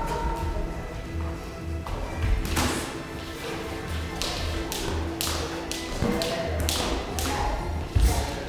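Boxing gloves landing punches in sparring: sharp slapping hits, several a second in quick clusters through the second half, mixed with footwork on the ring canvas.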